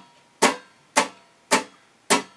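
Guitar strummed in a steady quarter-note rhythm, about two strums a second. Each chord strikes sharply and rings down before the next: three strums, after the fading tail of the one before.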